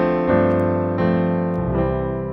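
A sampled piano from a Kontakt virtual instrument playing back MIDI chords over a low bass note. New chords come in about a second in and again near the end, each ringing on and fading slowly.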